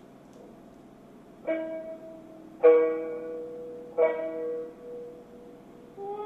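Music: three single plucked notes on a string instrument, each struck sharply and left ringing as it fades, the first about a second and a half in and the others about a second and a quarter apart.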